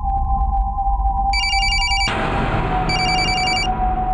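Mobile phone ringing: two short electronic trilling rings, about a second and a half apart, over a steady background music drone.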